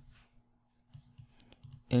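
A few faint, quick clicks at a computer, from the mouse or keys being worked while using a spreadsheet, after a near-silent first second.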